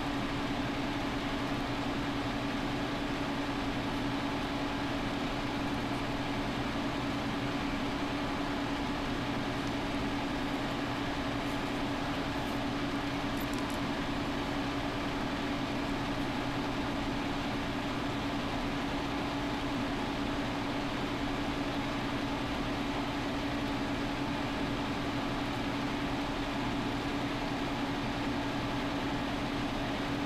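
A steady mechanical hum with a constant low tone and an even hiss, unchanging throughout.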